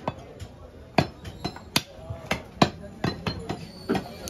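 A heavy curved butcher's knife chopping through beef onto a wooden log chopping block: a string of sharp, uneven chops, about two a second.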